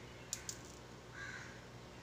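Two light clicks of a silicone spatula against a non-stick pan as it is scraped out over a bowl of batter, then a brief harsh sound a little over a second in; all faint.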